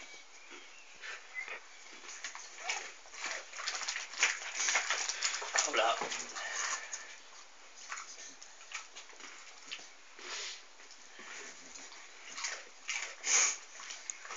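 Staffordshire bull terrier making soft vocal noises in short, scattered bursts as it begs for a share of its owner's snack.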